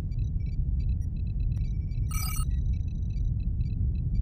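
Starship bridge ambience sound effect: a steady low hum under scattered short, high computer-console beeps, with a brighter electronic chirp about two seconds in.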